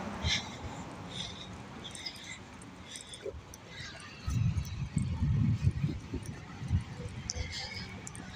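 Street sounds picked up while walking on a city pavement: light scattered clicks, then about four seconds in an uneven low rumble that lasts a couple of seconds and fades into weaker bursts.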